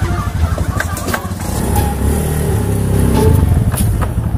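Motor scooter engine running as the rider moves off, a steady low rumble whose pitch shifts a little partway through.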